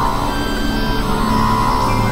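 Experimental electronic drone music: a dense stack of sustained synthesizer tones held steadily at an even loudness, with a low hum underneath.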